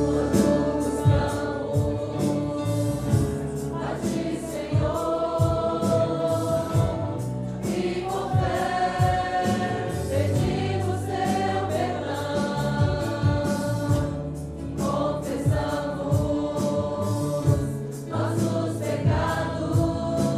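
A congregation singing a Portuguese hymn together, many voices holding long notes, accompanied by a small band with a drum kit and guitars keeping a steady beat.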